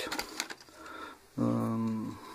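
Brief clicks and rustling from the felt case being handled, then a man's drawn-out, level-pitched hesitation sound ("eeh") held for most of a second near the end.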